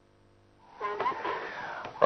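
A live broadcast feed's sound cutting back in after a signal drop-out. There is dead silence for about the first half second, then a brief snatch of voice over background hiss and a thin steady whine.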